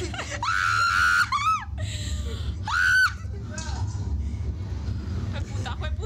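Thrill-ride riders screaming: a long high scream about half a second in, a falling cry just after, and a second, shorter high scream around three seconds, with laughing voices and a steady low rumble underneath.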